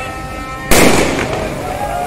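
A firework goes off once with a loud bang about two-thirds of a second in, over the voices of a street crowd.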